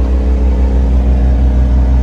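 Caterpillar 236D skid steer loader's diesel engine running steadily at low speed, heard from inside the cab as an even, deep hum.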